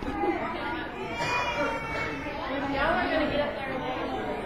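Many voices chattering at once, overlapping talk with no single speaker standing out.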